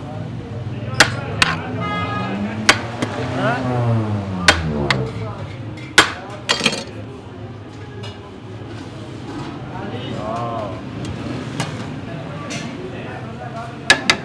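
A metal serving spoon knocking and clinking against a large steel cooking pot and china plates as rice is dished out: about six sharp clinks in the first half, a second or more apart, then fewer. Background voices murmur throughout.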